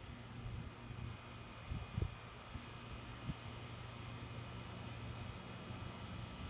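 Faint outdoor background with a steady low hum and a few soft thumps.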